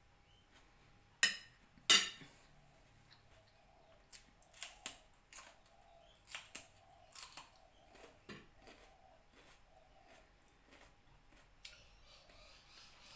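Two sharp clinks of a metal fork against a plate, under a second apart, followed by a run of fainter clicks and mouth sounds of someone chewing.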